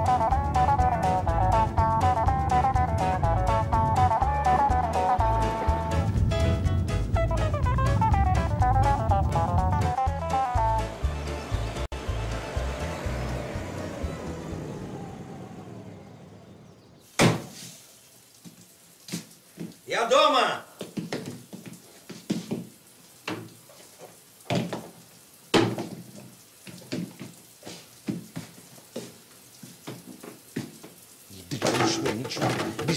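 Background music with a melody over a steady drum beat, fading out over the middle. Then a sharp knock from a front door, a short creak and scattered footsteps and knocks in a small hallway.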